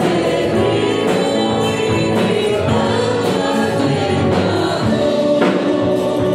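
A church congregation and worship band sing a Spanish-language hymn together, with many voices over strummed guitars and a steady beat.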